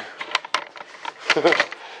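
A man's short laugh about a second in, preceded by a few light clicks.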